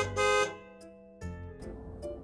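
A short, horn-like edited sound effect: one steady chord held for about half a second at the start, followed by fainter background music.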